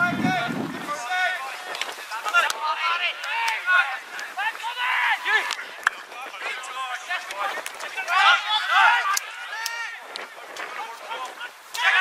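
Shouted calls from football players and coaches on an open pitch, voices overlapping and coming and going, with a few sharp knocks of a ball being kicked.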